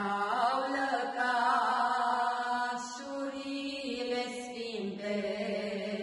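Two women singing a slow Romanian Orthodox hymn in a chant-like style, with long held notes that waver and glide between pitches.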